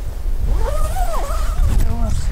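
Wind buffeting the microphone in a low, steady rumble. From about half a second in, a wavering tone that rises and falls runs for over a second.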